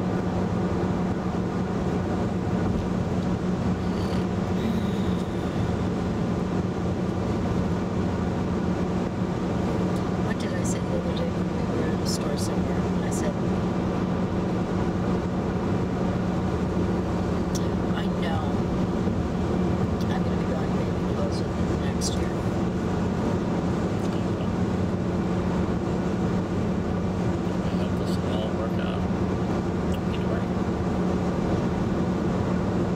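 Steady road and tyre noise inside the cabin of a 2011 VW Tiguan cruising at highway speed, with a constant low drone. A few faint, brief high ticks come through in the middle.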